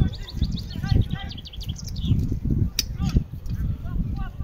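Voices calling out across an American football field, with a quick run of short high chirps in the first second and an uneven low rumble. A single sharp click comes a little before three seconds in.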